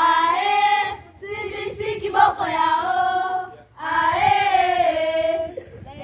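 Children singing a song, with no instruments, in three long phrases with held notes.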